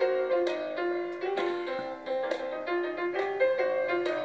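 Grand piano playing an instrumental passage of a jazzy Christmas song: a run of struck notes and chords, each ringing on.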